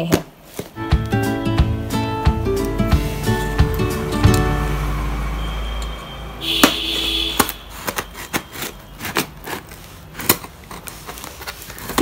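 Instrumental background music plays for about the first half and stops about six seconds in. Then a box cutter slices through the packing tape on the cardboard box, and the box is handled with scattered clicks and taps.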